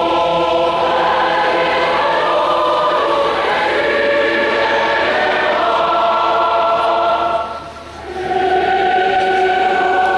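A large choir singing long, held chords in several parts, with a short break about seven and a half seconds in before the next phrase begins.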